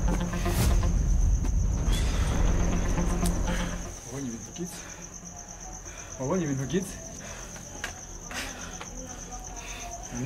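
A cricket trilling steadily in a high, fast-pulsing tone. Low background music runs under it and fades out about four seconds in, and a voice is heard briefly near the middle.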